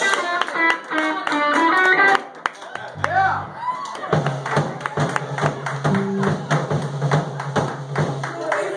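A live band's electric guitar plays a fast run of notes to close the song. A low note is then held under scattered clapping from the audience, which starts about four seconds in.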